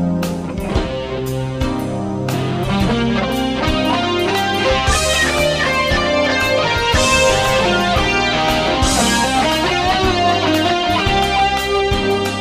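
Guitar-led music: an electric guitar playing melodic lines over a bass line and a drum beat.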